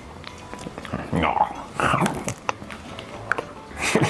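A man chuckling and making short wordless voice sounds with his mouth full while biting and chewing a wafer ice cream sandwich, with small clicks of chewing between them. Quiet background music runs underneath.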